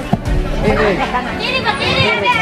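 Many girls' voices chattering at once over background music.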